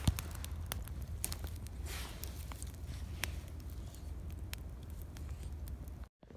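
Campfire of damp wood crackling, with sharp pops scattered all through it over a low steady rumble.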